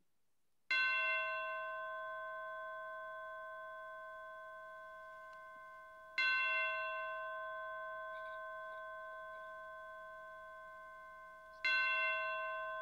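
A bell struck three times, about five and a half seconds apart, each strike ringing on and slowly dying away.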